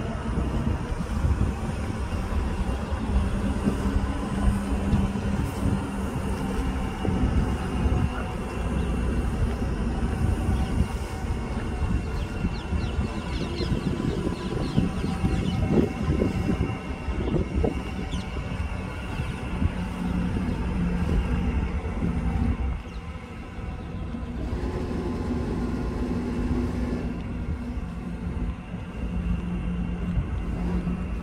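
A steady mechanical drone with a hum of several even tones over a constant low rumble, with a brief dip about two-thirds of the way in.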